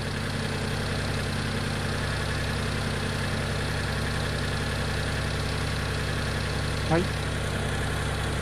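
Mitsubishi eK Sport's small turbocharged engine idling steadily with the air conditioning on, the radiator's electric fan running alongside.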